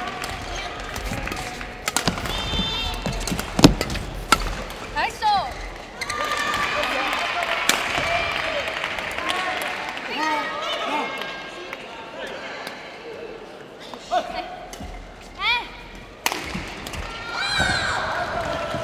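Badminton play on an indoor court: sharp racket strikes on the shuttlecock and footfalls, with shoe squeaks on the court floor several times, and voices in the hall.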